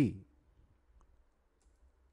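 A few faint, sparse computer keyboard clicks as code is edited, following a spoken word right at the start.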